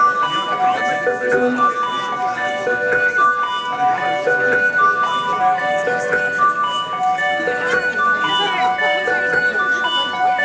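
Live band music played through a venue PA: a bright, chiming melody of short held notes stepping up and down, with voices mixed in.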